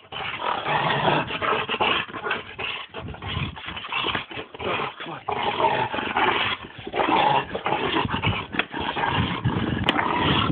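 American pit bull growling in play as it worries a car tyre, in dense irregular bouts.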